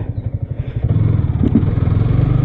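Yamaha motorcycle engine running at low speed as it rolls slowly along a lane, a steady low pulsing exhaust note that picks up slightly about a second in.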